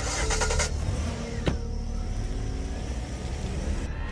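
A car engine starting with a loud burst of noise and then running steadily with a low rumble, with a single sharp click about a second and a half in.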